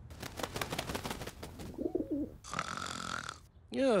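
Cartoon sound effects: a quick run of bird chirps and a dove cooing, then a sleeper snoring, with a loud wavering, falling snore near the end.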